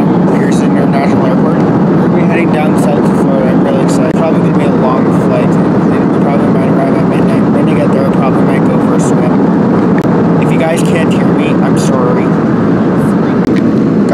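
Steady, loud cabin noise of a jet airliner's engines and airflow heard from a passenger seat just after takeoff, with faint voices over it.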